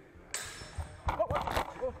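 Steel longsword trainers striking in sparring: one sharp hit about a third of a second in with a short metallic ring, then a flurry of knocks mixed with a voice's exclamation.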